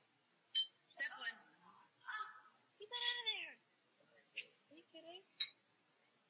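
A metal utensil clinks against a ceramic bowl about four times, short sharp taps, while someone eats. Between the clinks come short vocal sounds, the longest an arched hum near the middle.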